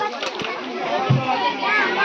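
Overlapping voices of children and adults chattering and calling out.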